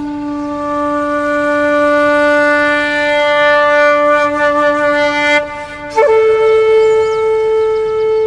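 A wind instrument playing a slow tune of long held notes: one low note sustained for about five seconds, a brief break, then a higher note held on.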